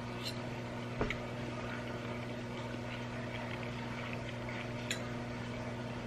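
Quiet chewing of a mouthful of fried egg, with a sharp click of the metal fork about a second in and a few faint small clicks, over a steady low hum.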